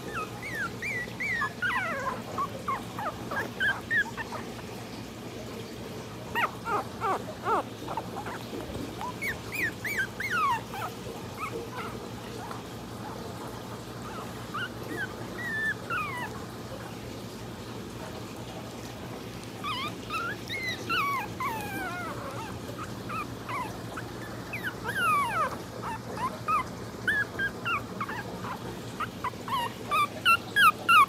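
Chihuahua puppies crying with short, high-pitched calls that fall in pitch, coming in bouts every few seconds.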